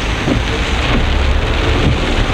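Heavy rain falling on a lifted pickup truck, heard from inside the cabin as a steady hiss over a continuous low road and engine rumble while it drives on wet pavement.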